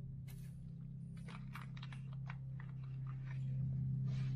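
Small plastic parts bag crinkling and light clicks of small metal threaded inserts being handled, over a steady low hum.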